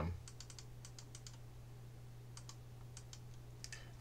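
Faint, scattered clicks from working a computer, in small groups of two or three, as keys on a calculator simulator are pressed. A low steady hum lies underneath.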